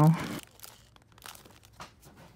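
Faint crinkling of plastic packaging being handled: a few soft, scattered rustles.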